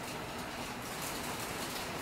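Steady low patter and hiss, which the speaker guesses may be hail falling on the roof.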